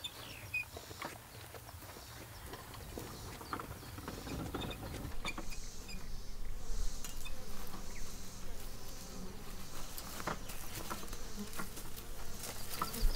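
Wooden wheelbarrow rolling and knocking over dirt and leaf litter, with footsteps and scattered clicks that grow louder after about four seconds, while insects buzz around.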